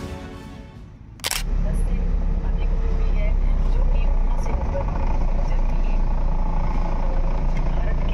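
Background music fading out, a sharp click about a second in, then the steady low rumble of a car driving, heard from inside the cabin.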